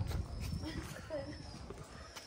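Young calico cat meowing, two short meows about a second apart.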